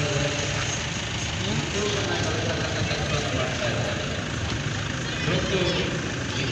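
A vehicle engine idling steadily under indistinct, quiet voices of several people talking.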